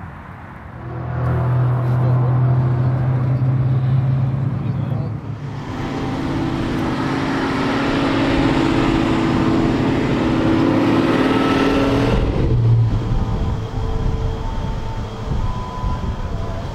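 Idling V8 car engine with a steady low note. About five seconds in the sound changes to a higher, louder engine note, which drops back to a low idle after about twelve seconds.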